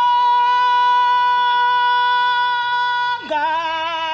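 A woman singing unaccompanied. She holds one long high note perfectly steady for about three seconds, then drops to a lower line with a wide vibrato.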